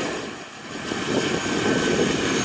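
Turboprop engine and propeller of a PAC 750XL jump plane running as it taxis away, with a faint steady high whine; the sound dips briefly, then swells again about a second in.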